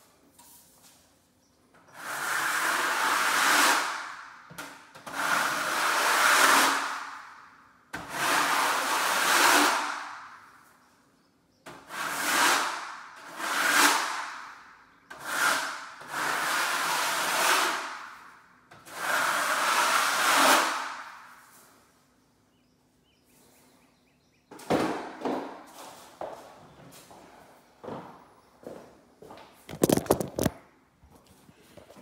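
A drywall knife scraping over joint compound on a wall in long strokes, about eight of them lasting a second or two each with short gaps between. Near the end come a few shorter, quieter scrapes.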